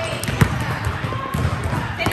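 Basketball bouncing on a court in irregular thumps, the loudest about half a second in, over steady chatter from the crowd.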